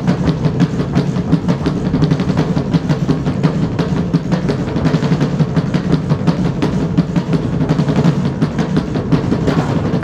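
Large rope-tensioned drums beaten in a fast, driving tribal rhythm by several drummers together, over a steady low drone.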